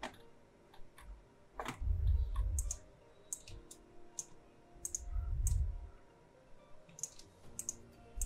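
Computer mouse clicking: about a dozen sharp, light clicks scattered irregularly. Two soft low rumbles come in, around two seconds and five and a half seconds in.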